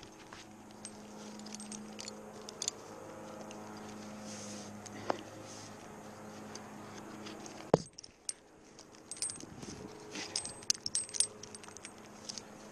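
Metal climbing and rigging hardware, carabiners and a rigging pulley, clinking and jingling as a rope sling is set around a tree trunk, with a flurry of small clicks near the end. Two sharp knocks come about halfway and about two-thirds of the way in, over a steady low hum that stops soon after the second knock.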